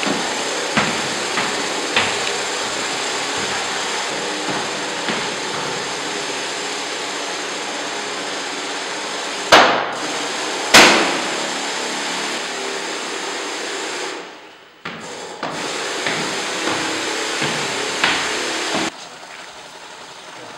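Backpack sprayer misting disinfectant with a steady hiss, broken by scattered light clicks and two sharp knocks about halfway through. The hiss dips briefly, returns, then falls away sharply about a second before the end.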